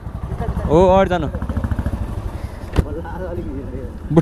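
Motorcycle engine running at low speed as the bike is ridden slowly, a steady pulsing rumble. A voice cuts in briefly about a second in, and there is a single sharp click a little before the end.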